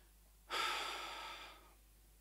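A man's breath into a handheld microphone held close to his mouth: a single loud rush of air starting sharply about half a second in and fading away over about a second.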